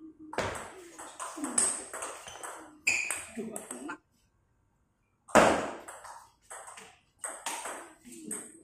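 Table tennis rally: the celluloid ball ticking off the rackets and the table in quick succession, with a short laugh about three seconds in. After a brief silent gap there is a louder burst just past the middle, then a few more ball hits.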